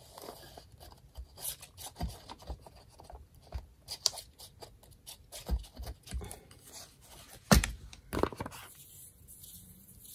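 Glue stick rubbed back and forth across paper: dry scratchy strokes with small clicks and taps against the table. Two louder knocks come about three quarters of the way through.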